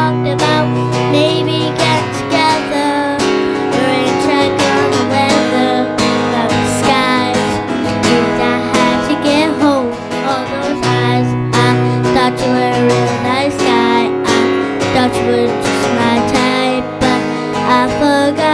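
Strummed acoustic guitar accompanying a young girl singing a song into a microphone.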